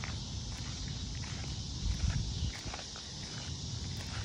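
Cicadas droning steadily in a high, even buzz. Underneath are a low rumble of wind on the microphone and the faint scuff of footsteps.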